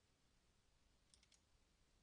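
Near silence, broken a little past halfway by a quick run of three faint clicks from computer input at the desk.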